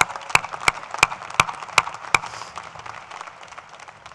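One person clapping right in front of a microphone, loud sharp claps about three a second that stop about two seconds in. Applause from a large audience fills the background and dies away toward the end.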